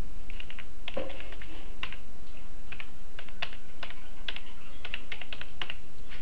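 Computer keyboard being typed on: a quick, irregular run of key clicks, about fifteen keystrokes spelling out a single word.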